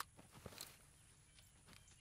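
Near silence with a few soft scuffs and taps in the first second, a person shifting and getting to his feet.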